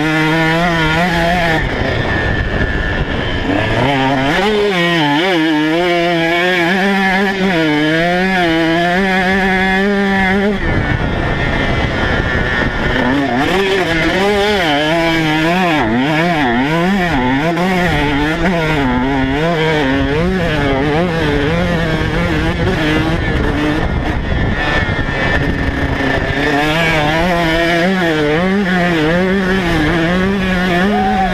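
KTM 150 SX two-stroke single-cylinder motocross bike engine heard close up from on the bike, its pitch rising and falling again and again as the throttle is worked through sand corners and straights. Twice, for a couple of seconds, the clear engine note blurs into a rougher rush.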